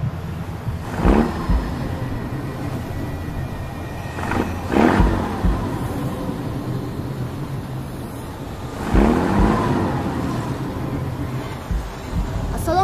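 Steady low rumble of a car, with three louder rushing swells about four seconds apart: near the start, in the middle and near the end.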